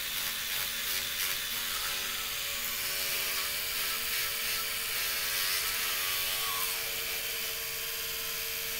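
Electric toothbrush running steadily in the mouth during brushing: a constant motor hum with a hiss of bristles on the teeth.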